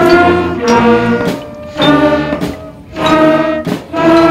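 A beginning school concert band of woodwinds and brass (flutes, clarinets, saxophones, trumpets, trombones, baritones) playing together as a mixed multitrack recording. It plays a series of held chords, each lasting about a second, with short breaks between them and the pitch moving from one chord to the next.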